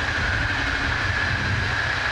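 Electric passenger train, a locomotive hauling coaches, passing at speed: a steady rumble of wheels on rail with a steady high-pitched tone running through it.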